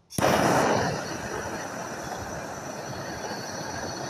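Handheld gas torch lit just after the start, loudest for the first half-second, then burning with a steady hissing flame played on a sawdust-and-wax fire-log firestarter ball.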